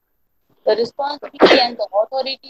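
A person's voice speaking, broken about a second and a half in by one short, loud burst of noise, the loudest sound here.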